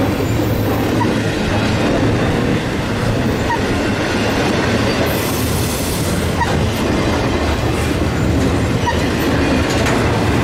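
Double-stack intermodal freight cars rolling past close by: a steady rumble of steel wheels on rail, with brief faint wheel squeaks now and then.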